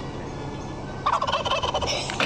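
Turkey gobbling: a loud, fast pulsing call that starts about a second in.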